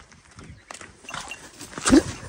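Goats moving about in a pen: a few light scattered hoof clicks and knocks, then a short, loud goat cry near the end.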